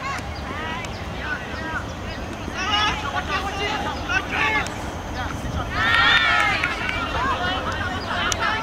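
Players shouting high-pitched calls to one another across a field during play, in short bursts, loudest about six seconds in, over a steady low rumble.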